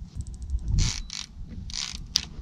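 A fishing reel's line clicker ratcheting in short rasping bursts as a musky runs with the bait and pulls line off the reel.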